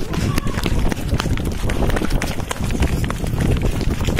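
Several people running on a paved road, many quick, irregular footfalls over a steady low rumble.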